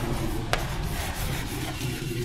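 Chalk scratching across a chalkboard as words are written by hand, with one sharp chalk tap about half a second in.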